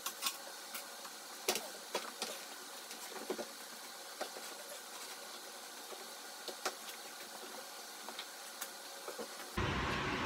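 Faint scattered knocks and clunks as a benchtop band saw is lifted and set down on a plywood cart.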